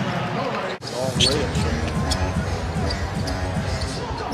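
Arena sound of a live basketball game: crowd noise with a ball bouncing on the hardwood court. There is a short sudden break in the sound about a second in.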